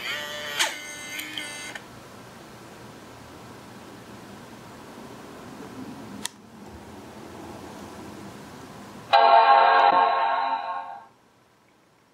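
MacBook Pro startup chime, a ringing chord, sounding twice: once at the start and again about nine seconds in, fading out each time. Each chime is the laptop restarting while Option, Command, P and R are held down, the sign that an NVRAM reset is in progress.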